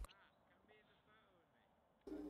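Near silence, with a few faint pitched calls that rise and fall in the first second or so.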